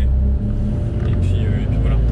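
Dallara Stradale's turbocharged Ford EcoBoost four-cylinder engine running under way, heard from inside the open cabin. Its low drone drops back about half a second in and picks up again near the end.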